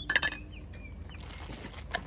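Metal lid of a camping cookware set clinking as it is set down, with a short metallic ring, and a second light metal clink near the end. Faint bird chirps in between.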